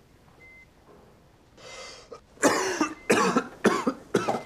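A man coughing: a sharp breath in about a second and a half in, then three hard coughs in quick succession near the end.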